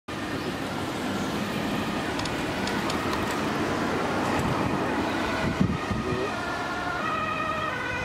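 Approaching ambulance siren on an urgent call, faint over road traffic at first, then stepping clearly between two pitches and growing louder near the end.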